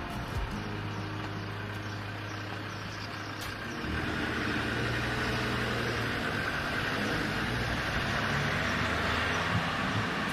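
Road traffic: a car's engine and tyre noise, steady at first and growing louder about four seconds in.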